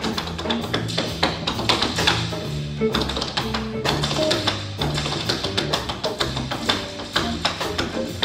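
Small jazz band playing live: an upright bass line steps under drum kit and djembe, with many sharp percussive taps and strikes; the saxophone and trumpet are not playing.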